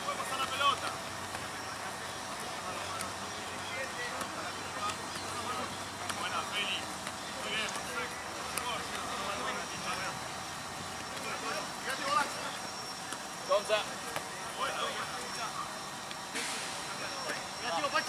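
Several people's voices calling out and talking at a distance, over steady outdoor background noise, with a few short sharp slaps about two-thirds of the way through.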